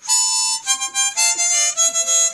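Harmonica played solo: a short melody of separate held notes, stepping downward in pitch.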